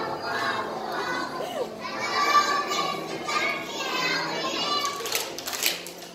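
A group of young children singing together, many voices at once on held notes. A brief cluster of sharp clicks comes about five seconds in.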